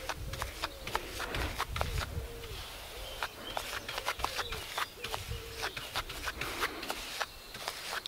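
Flat paintbrush loaded with thinned Mod Podge scrubbing back and forth over the plastic square drills of a diamond painting, a run of small irregular clicks and scratches as the bristles drag across the faceted drills.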